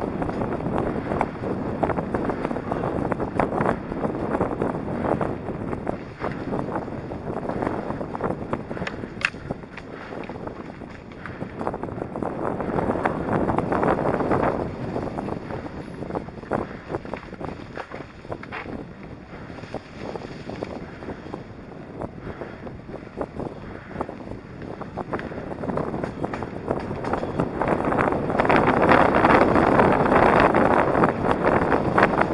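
Electric mountain bike ridden along a rough dirt forest trail: wind buffeting the microphone over tyre noise and the clatter of the bike over bumps. Loudest near the end.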